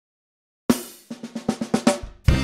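Silence, then about two-thirds of a second in a loud drum hit that rings on, followed by a quickening run of snare-drum strokes: a drum fill opening the background music.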